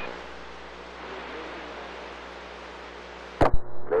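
CB radio receiver hiss: steady static on the open channel between transmissions. It ends with a sharp click about three and a half seconds in, as the other station keys up.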